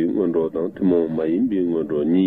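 Speech only: a man's voice talking steadily, with short pauses between phrases.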